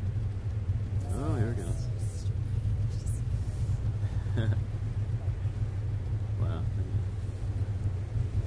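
Boat motor running steadily with a low drone, while the boat sits among floating ice. A few short bursts of voices come over it about a second in and again in the second half.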